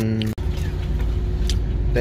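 A man's long, slightly falling hum of enjoyment while eating, which cuts off abruptly a third of a second in. It gives way to the low, steady rumble of an idling vehicle engine inside the truck cab, with a faint steady hum and a few light clicks.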